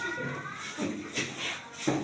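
Shoes shuffling on a classroom floor as children move about at the blackboard, with faint children's voices near the start.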